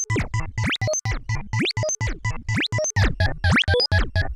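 Novation UltraNova synthesizer playing a fast run of short, chopped notes, about six a second, many sweeping quickly up or down in pitch.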